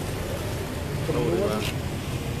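A man's voice speaking briefly about a second in, over a steady low background rumble.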